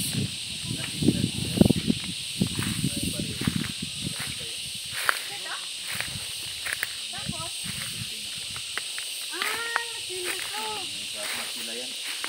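Steady high-pitched drone of insects, with footsteps and rustling over dry leaves and rocks in the first half. A few short sliding calls come about ten seconds in.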